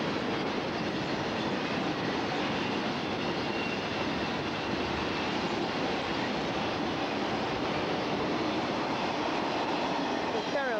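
Intermodal piggyback freight train, truck trailers on flatcars, rolling steadily past: a continuous rumble and rattle of steel wheels on rail.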